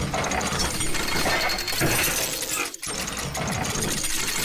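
Edited sound effects for an animated subscribe-button intro: dense, rapid clicking and mechanical ratcheting with a hiss. It drops out briefly just before three seconds in.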